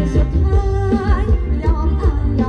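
Live Thai ramwong dance music from a band: a singer over a steady, driving beat.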